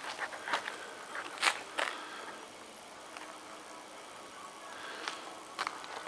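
Faint scattered clicks and rustles of a handheld camera being handled and moved, about six irregular ticks over a low background hiss.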